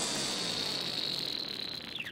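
The closing tail of an electronic dance music mix fading out: a thin, high, held synth tone, drifting slightly lower, over a decaying wash of sound that grows steadily quieter.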